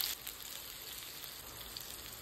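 Boiled potato chunks frying in oil in a cast-iron kadai: the sizzle drops just after the start to a faint, steady sizzle.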